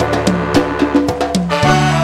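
Live band music with no singing: a bass line stepping between notes under sustained chords, with quick, sharp percussion hits.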